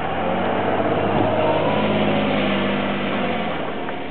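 A car driving past on the street, its engine sound swelling to a peak around the middle and then fading away.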